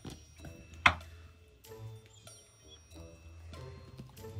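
Background music of short, light, ticking notes, with one sharp knock a little under a second in.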